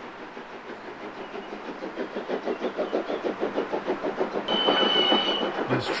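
A train running on the rails, the rhythmic clickety-clack of its wheels growing louder, with a high steady whistling tone about four and a half seconds in that lasts about a second.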